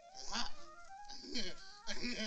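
Two short goose-like honking calls, one about a quarter second in and another about a second and a half in, over soft background music.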